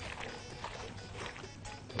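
Soft, wet squishing of oiled onion slices being rubbed and kneaded by gloved hands in a glass bowl, under faint background music.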